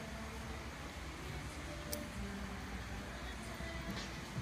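Steady low rumble of a large indoor arena, with faint music in the background and one sharp click about two seconds in.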